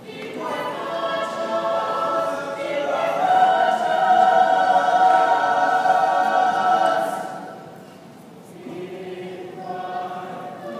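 Mixed choir singing, heard from the audience seats of an auditorium: sustained chords that swell to a loud held chord, fade away about eight seconds in, and then a softer phrase begins.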